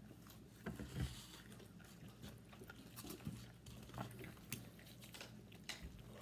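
People chewing and biting fried chicken, with faint, scattered short crunches and mouth clicks at irregular intervals.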